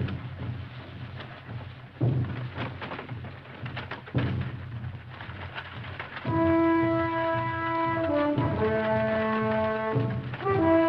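Orchestral film score: low rumbling drums with a heavy hit about every two seconds, then sustained brass chords that come in about six seconds in and shift pitch near the end.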